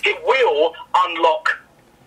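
A man speaking for a second and a half, then pausing.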